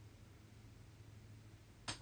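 Near silence: room tone with a low steady hum, broken near the end by one brief, sharp breath drawn in through an open mouth.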